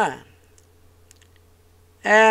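A voice trails off at the start, then a few faint, short clicks sound over a steady low hum.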